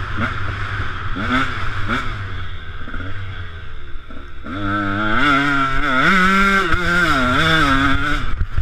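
KTM 125 SX single-cylinder two-stroke motocross engine under hard throttle: its pitch climbs in short repeated runs, drops briefly about four seconds in, then holds at high revs, rising and falling with the throttle.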